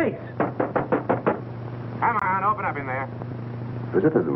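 Knocking on a door by hand: a quick run of about eight knocks in the first second or so.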